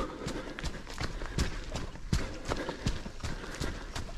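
Running footsteps on a packed dirt path, an even stride of a little under three footfalls a second.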